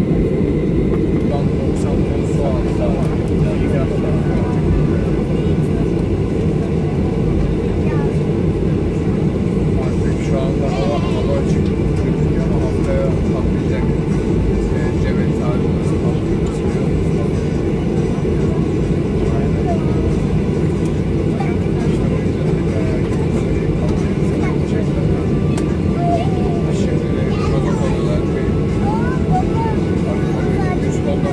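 Steady low cabin noise inside a Boeing 737 taxiing after landing, with the engines running at idle. Faint indistinct passenger chatter runs under it.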